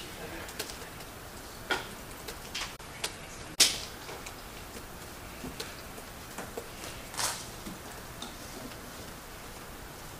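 Quiet courtroom room tone with scattered small knocks and clicks, the sharpest a single knock about three and a half seconds in.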